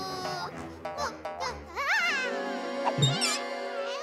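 Background music with a cartoon character's high, wavering whimpering cry about halfway through.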